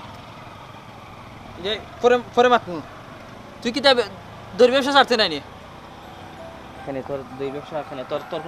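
A man speaking in several short, emphatic bursts of Sylheti Bengali dialogue, with pauses between them.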